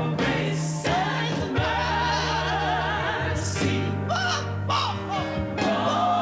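A woman singing a gospel song into a microphone over a band accompaniment, holding long notes with wide vibrato.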